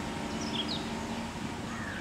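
A few short, high bird chirps about half a second in and a falling call near the end, over a steady low rumble.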